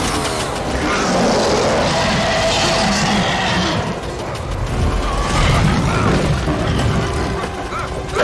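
Action-film soundtrack mix: dramatic score music layered with fight sound effects, booms and crashes, dense throughout, with a hissing, shrieking stretch in the first half and heavier low rumbling later.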